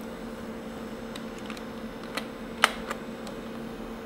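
A few keyboard key presses, sparse clicks with one sharper than the rest a little past halfway, over the steady hum of running computer fans.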